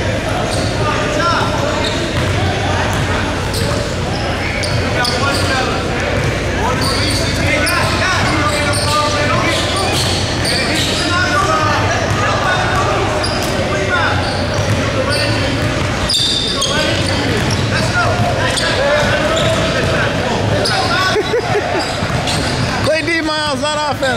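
A basketball bouncing on a hardwood gym court, with players' and onlookers' voices echoing around a large hall.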